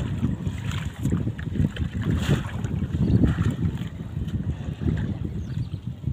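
Wind buffeting the microphone in irregular low gusts, over water sloshing and splashing as people wade through shallow water dragging a fishing net.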